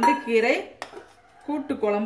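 Metal ladle stirring and scraping thick kootu in an aluminium pressure cooker, with one sharp knock of the ladle against the pot about a second in.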